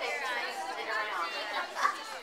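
A group of children chattering, several voices overlapping, with one voice rising louder near the end.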